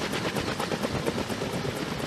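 Kaman K-MAX helicopter running on the ground, its intermeshing twin rotors turning and giving a rapid, even blade beat over the noise of its single turboshaft engine.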